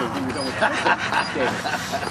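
A Giant Schnauzer barking and whining excitedly, with people's voices mixed in.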